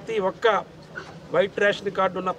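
A man speaking in short phrases, with a pause in the middle; nothing but speech is plainly heard.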